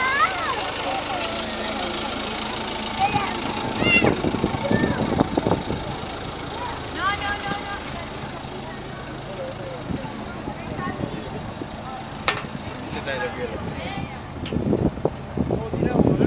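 Indistinct children's voices and calls over a steady low hum of an idling vehicle engine.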